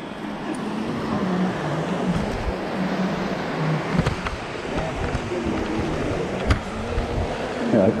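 Steady rush of breaking surf and wind with low voices talking in the background, and a couple of brief knocks about halfway through and again later.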